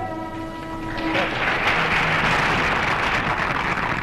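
A veena's final held note rings for about a second, then a hall audience breaks into steady applause.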